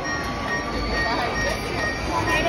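Droid activation station playing its power-up effect: a steady mechanical whirring hum with faint held high tones, under faint voices.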